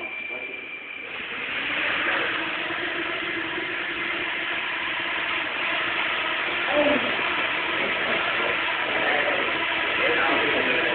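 The propellers of a group of nano quadrotors spinning up together make a buzz of many steady overlapping tones. It grows louder about a second in and then holds steady.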